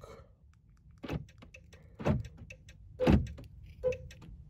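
Car door lock actuators thunking about four times, roughly a second apart, as the lock buttons on a smart key card are pressed, with small clicks between the thunks.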